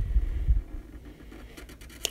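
Handling noise from a hand working over a paper legal pad with a felt-tip marker: a few low muffled bumps in the first half second, then faint short scratchy ticks.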